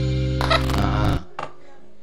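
Intro music for the title sequence: a loud sustained low chord with a short bright sound effect about half a second in. The music cuts off abruptly just after a second, leaving only faint low tones.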